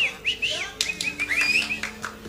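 A quick run of high, bird-like chirps, each a short rising-and-falling whistle, over faint steady low tones.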